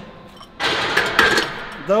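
A steel barbell being set back into a power rack's hooks: several sharp metallic clanks and a rattle, with a brief ring, starting about half a second in.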